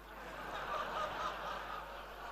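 Audience laughing softly: a low wash of many voices rising and falling through the hall.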